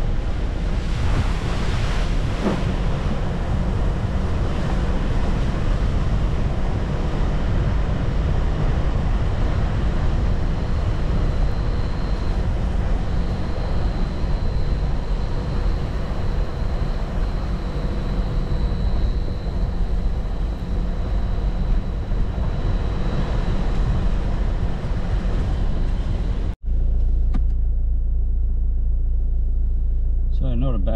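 A vehicle driving along a dirt bush track, its engine and tyres on the gravel mixed with a steady low rumble of wind on the outside microphone. Near the end the sound cuts out for an instant and gives way to a steadier, lower engine hum heard from inside the cabin.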